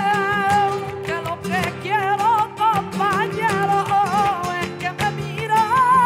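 Flamenco music: a sung voice winding through a wavering, ornamented melody over flamenco guitar, with sharp percussive strikes throughout.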